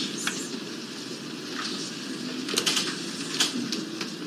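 Courtroom room noise during a pause in speech, a steady low murmur with a few faint short sounds scattered through it.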